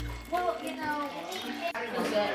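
Sparkling grape juice poured from a glass bottle into a plastic cup, with children's voices in the background.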